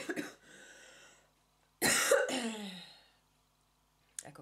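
A woman coughing: a short catch at the start, a breath in, then one loud cough about two seconds in that trails off with a falling voiced tail.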